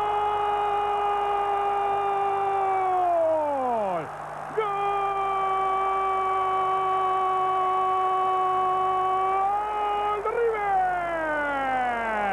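A Spanish-language football commentator's drawn-out goal cry, "goooool", held on one steady pitch for several seconds and then sliding down in pitch. He gives two long held cries, the second about six seconds long, then starts a shorter falling one near the end.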